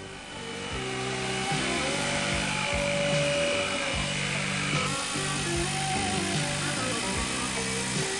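Background music over an electric jigsaw running steadily with a high whine, cutting a bevel through an expanded polystyrene foam insulation board.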